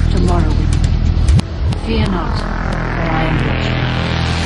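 Full-on psychedelic trance in a breakdown: a held bass drone with a few falling synth sweeps, then a rising sweep that builds over the last two seconds toward the return of the beat.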